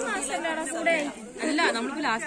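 Speech only: a woman talking, with other voices chattering in the background.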